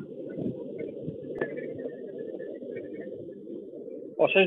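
Steady, rough background noise picked up by an open microphone on a video call, with faint high chirps above it.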